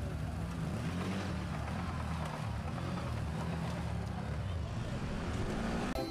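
Quad bike (ATV) engine running under load, its pitch rising and falling as the throttle varies.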